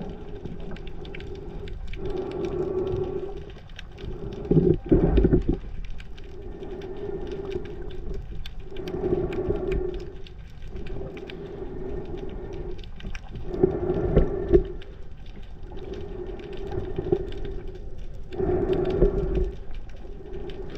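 Steady low mechanical hum heard underwater, swelling and fading every couple of seconds, with louder surges of water noise against the camera housing about every four to five seconds.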